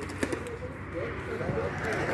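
Faint, indistinct voices of people talking in the background, with a sharp click about a quarter second in.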